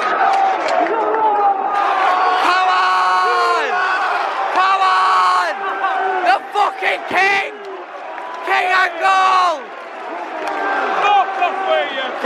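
A football crowd chanting and shouting together in the stand: a run of loud sung phrases, each held and then falling away in pitch.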